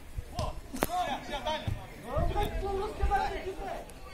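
Voices talking and calling out, with one sharp knock a little under a second in.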